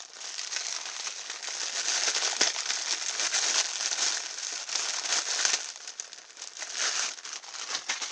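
Thin plastic packaging of a pack of scouring pads crinkling as it is torn open by hand and a pad is pulled out: a dense, crackly rustle that eases briefly about six seconds in.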